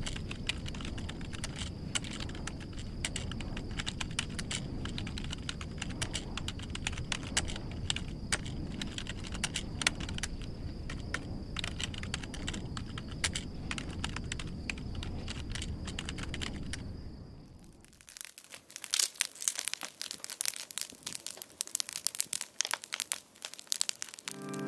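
Rapid, irregular keyboard typing clicks, a sound effect for text being typed onto the screen, over a steady low hum with a faint high whine. About three-quarters of the way through the hum drops out and sharper, louder irregular crackles take over.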